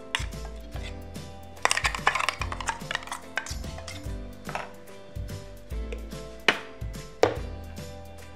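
Steel spoon scraping thick batter out of a steel vessel and clinking against the vessels' rims: an irregular string of light clinks and knocks, with two sharper ones near the end.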